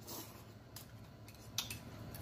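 Fork clicking against a plate and teeth while eating, a few faint clicks, with quiet chewing.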